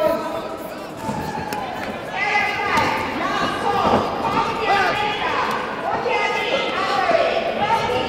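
Several people shouting over one another in a large echoing sports hall, with a few dull thuds of kicks and punches landing on gloves and pads.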